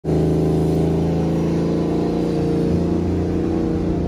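Car engine held at steady revs under load while its tyres spin in a burnout.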